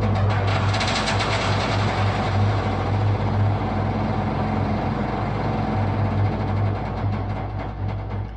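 Recording of a washing machine at the end of its spin cycle, processed through a granular sample manipulator with reverb and delay: a dense, steady mechanical noise over a strong low hum, with a wide stereo effect.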